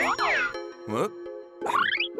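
Cartoon sound effects over light background music: a shimmering sweep at the start, then quick rising, boing-like pitch glides, one about a second in and another near the end.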